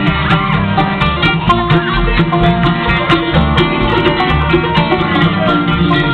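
Live bluegrass band playing an instrumental passage: banjo, mandolin, acoustic guitar and upright bass, with a steady pulsing bass beat under the picked strings.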